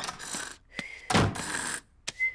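Cartoon sound effects of a front door being opened: a short noisy rush at the start, then the door shutting with a thud about a second in.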